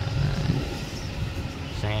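Low rumble of a road vehicle's engine, strongest in the first half-second and then fading to a quieter hum. A man's voice comes in near the end.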